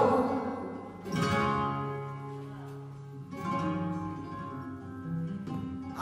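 Flamenco guitar playing a soleá between sung phrases: strummed chords about a second in and again a little after three seconds, each left to ring and fade, with a lighter one near the end. The singer's last held note dies away at the very start.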